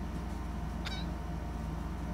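Steady low background hum with a single brief high-pitched chirp just under a second in.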